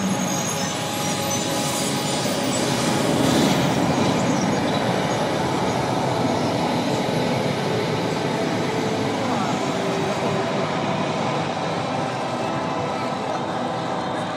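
Steady rushing, rumbling noise from a film soundtrack played over a theatre's speakers.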